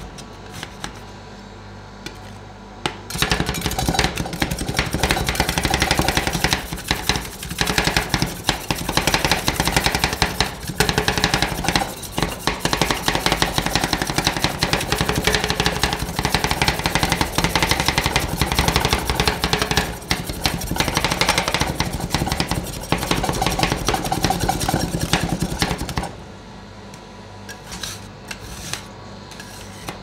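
Two steel spatulas chopping rapidly on a chilled steel ice-pan plate, a fast dense clatter of blade strikes from about three seconds in until a few seconds before the end, breaking chocolate pieces into the cream for rolled ice cream. Before and after the chopping, slower taps and scrapes of the spatulas on the plate.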